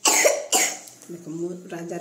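Two loud coughs about half a second apart, then a voice from about a second in.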